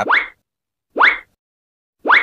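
Short cartoon-style 'bloop' sound effect, a quick rising pop, heard twice: once at the start and again about a second in, part of a series repeating about once a second.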